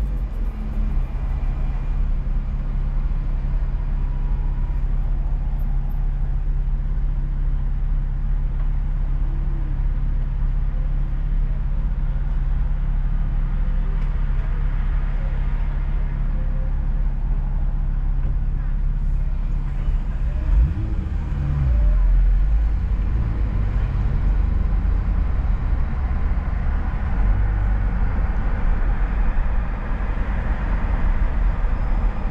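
Car engine idling with a steady low hum while stopped at a light, then revving up about two-thirds of the way through as the car pulls away, followed by a louder rumble of engine and road noise while driving.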